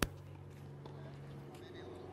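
A single sharp knock at the very start, then a faint, steady low hum of background noise that fades out near the end.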